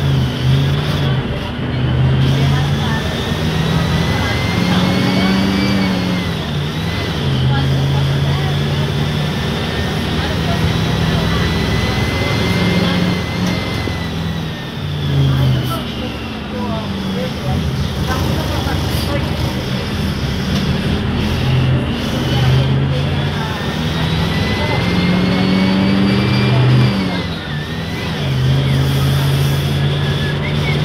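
Diesel engine of a Mercedes-Benz OF-1519 BlueTec 5 city bus, heard from inside the cabin, pulling through the gears. Its note climbs, drops at each shift and climbs again, with a higher whine rising and falling alongside.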